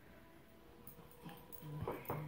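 A dog whimpering faintly in thin, steady, drawn-out tones, with a couple of soft knocks near the end.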